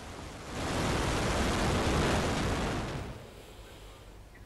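Rushing noise of a ballistic missile's rocket motor at lift-off. It swells about half a second in, holds for two seconds or so, then fades away.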